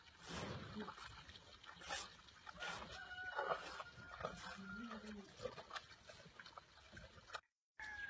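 A rooster crowing once, faintly, about three seconds in, over soft scratching strokes of a brush on a bull's coat. The sound cuts out briefly near the end.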